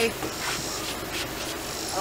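Large woven outdoor rug rustling and swishing as it is swung over and spread flat onto wooden deck boards, with a few short rustles. Insects buzz in the background.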